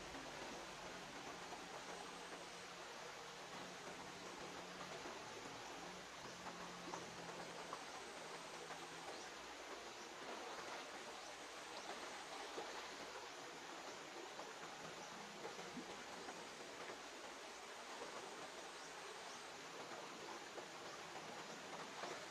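Faint, steady rush of a shallow river flowing over rocks.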